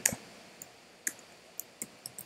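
A handful of separate, quiet computer keyboard keystrokes, spaced out rather than typed in a run.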